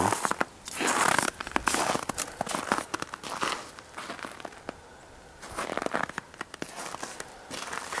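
Footsteps crunching through crusted, icy snow, coming in irregular clusters of crackly crunches with a short lull about halfway through.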